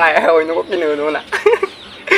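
A man laughing heartily, a quick run of voiced 'ha' sounds that trails off near the end.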